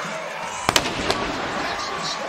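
Fireworks going off at a stadium: two sharp bangs close together just under a second in, a lighter pop soon after, and a low rumble trailing them, over a steady background of crowd and music.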